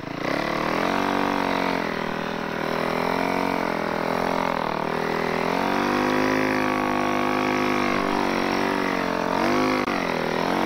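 Snow bike (dirt bike on a snow track kit) engine under load in deep powder, revving up sharply at the start, then rising and falling with the throttle, with a brief drop and pick-up near the end.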